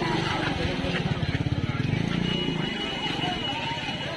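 A small auto-rickshaw engine running close by with a fast, even putter that fades out over the last second or so, under crowd chatter. A thin steady high whine joins about two seconds in.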